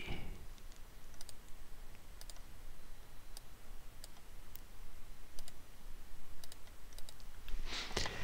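Computer mouse clicking: a series of faint, irregularly spaced clicks as cells are selected and formatted, some coming in quick pairs.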